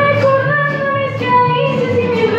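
Mariachi ensemble playing live: a female lead singer holds long sung notes over violins and an alternating bass line.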